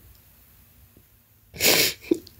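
A woman's single short, sharp burst of breath about a second and a half in, lasting about a third of a second.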